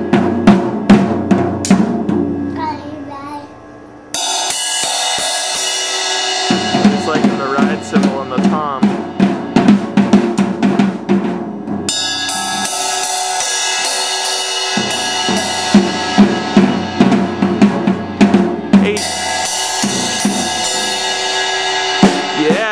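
A toddler bashing a drum kit with sticks: irregular, unsteady hits on the toms, snare and Zildjian cymbals. The level dips briefly about three seconds in, then the cymbals ring and wash almost continuously under the drum hits.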